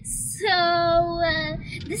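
A young girl's voice holding one long, steady sung note for about a second.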